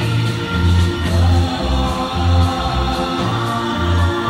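Live small band playing a Christmas song, with the band members singing together in chorus over a pulsing bass line.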